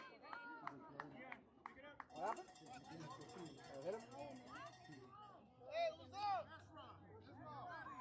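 Indistinct voices of players and spectators talking around a youth baseball field, with no clear words. A high, fast rattling hiss sits over them for about three seconds in the middle.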